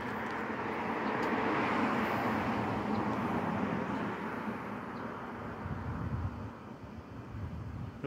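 A passing vehicle: its noise swells over the first couple of seconds, then fades away by about six seconds in.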